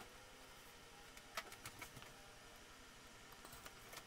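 Near silence: faint room hiss with a few faint, brief clicks.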